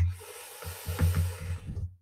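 A long breathy exhale close to the microphone, with a few soft computer-keyboard taps under it as a word is finished. The breath stops just before the end.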